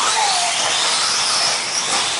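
Electric RC buggies racing, their motors and drivetrains whining with pitch sliding up and down as they speed up and slow, over a steady rush of tyre and track noise.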